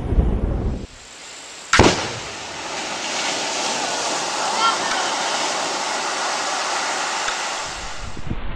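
A low rumble that cuts off about a second in, then a single sharp bang from an underwater explosive charge, followed by a long steady hiss of spray and water falling back from the blast's water column.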